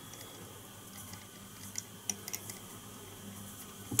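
Faint small clicks and soft handling noises of fly-tying work at the vise, with a few sharp ticks about two seconds in, over a quiet steady room hum.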